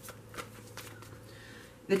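Tarot cards being dealt from the deck and laid down on a cloth-covered table: a few soft card flicks and slides, the strongest about half a second in.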